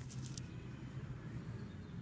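Copper Lincoln pennies clinking together in a hand: a few brief, light metallic clinks in the first half-second.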